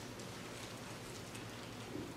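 Faint steady hiss of room tone, with a few soft ticks.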